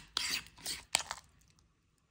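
Metal spoon clicking and scraping against a ceramic bowl while stirring chili crunch into softened butter. A few short, sharp clicks over about the first second, then the sound cuts off abruptly.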